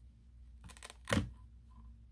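Quiet handling of a watercolor travel palette as a sponge is pressed back into place on its Velcro strip: a faint rustle and click, then a single short spoken word about a second in.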